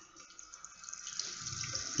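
Water running from a freshly opened instant electric water-heater faucet into a sink, starting faintly and building to a steady flow.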